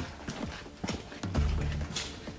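Irregular footsteps on a gritty concrete floor, with a low hum that swells briefly past the middle.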